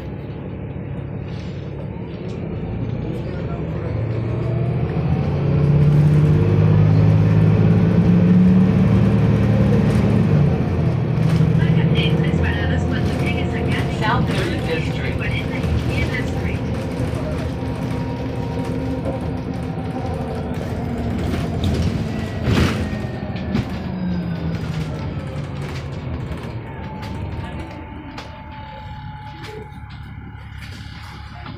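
Cummins ISL inline-six diesel and Voith automatic transmission of a 2008 Van Hool A300L bus, heard from inside the cabin, pulling away and accelerating. The engine note rises and is loudest a few seconds in, then eases off. There is a sharp knock about two-thirds of the way through, and near the end a whine falls in pitch as the bus slows.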